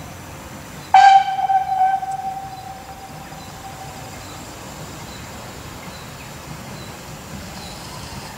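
Steam whistle of a Ty2 steam locomotive: one blast starting suddenly about a second in, loudest for about a second, then fading away over the next two seconds. Faint regular high ticks sound in the background.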